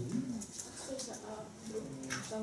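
Low, faint murmur of voices in a classroom, with a few light clicks of computer keyboard keys as an R console command is typed.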